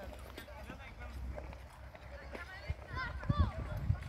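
Distant voices of people skating, scattered calls and shouts that rise and fall in pitch, with a cluster of calls about three seconds in, over a steady low rumble and a few low thumps.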